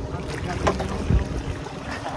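Boat motor running under way, with water rushing and splashing alongside the hull and wind on the microphone. There are a few short knocks near the middle.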